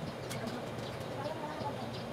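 Background birds chirping: short high chirps repeating a few times a second, with lower calls underneath.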